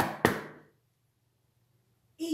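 Quick knocking on a hard surface, about four knocks a second, the storyteller's knock for the wolf at the door; the series ends with two knocks right at the start and then stops.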